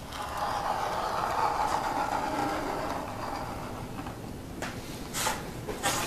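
Marking knife drawn along a steel framing square, scoring a line across a plywood panel: a steady scrape lasting about four seconds. A few light knocks follow near the end as the square is handled.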